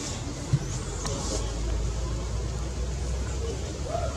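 Low rumble of a road vehicle running in the background, growing louder about a second and a half in, with one sharp knock about half a second in.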